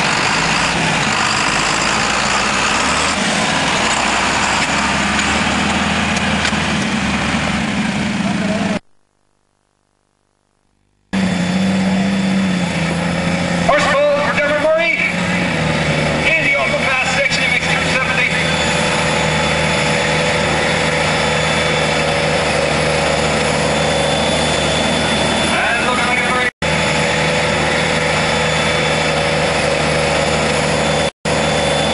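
Large farm-tractor diesel engines running steadily under load during a tractor pull. The sound cuts out completely for about two seconds around nine seconds in, then the engine carries on at an even pitch, with a momentary dropout near the end.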